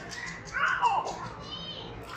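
Young children's high voices calling out, loudest about half a second in as one child's voice slides down in pitch, with a shorter higher call near the end.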